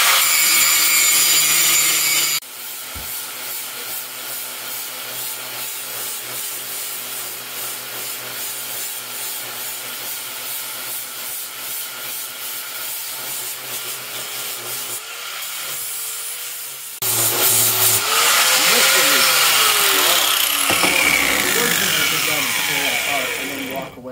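Handheld angle grinder grinding a rusty steel transmission-adapter face flat, a continuous grinding noise whose pitch rises and sags as the load changes. Near the end the grinder's pitch falls as it winds down and stops.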